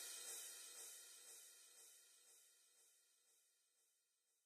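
The closing cymbal of a trap instrumental ringing out and fading away, gone by about three seconds in.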